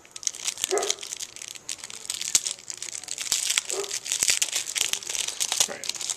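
A plastic wrapper and cardboard sleeve being worked off a cigar by hand: continuous, irregular crinkling and crackling with many sharp little clicks.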